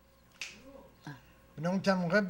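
A short, sharp click, then a fainter one, in a quiet room, followed about a second and a half in by a man starting to speak.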